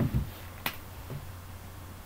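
A single sharp click about two-thirds of a second in, over a steady low hum.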